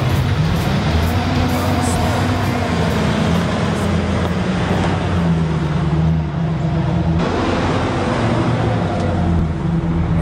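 GMC Sierra pickup truck engine revving, its pitch rising and falling as the rear wheels spin in snow.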